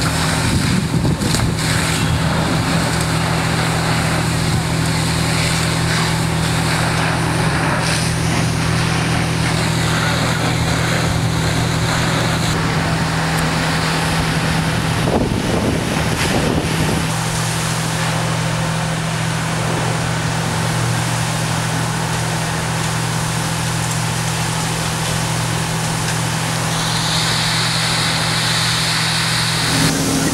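A steady low engine drone, typical of a fire engine running its pump, under a continuous rushing hiss of hose water and fire. A higher hiss comes in near the end.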